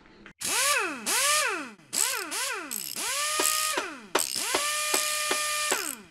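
Electronic intro sound effect: a run of swooping tones that rise and fall over a hiss, then a held tone chopped into about four quick pulses a second, cutting off suddenly near the end.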